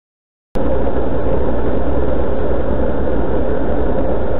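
Steady rush of wind and rolling road noise on a camera mounted on a moving velomobile, beginning suddenly about half a second in.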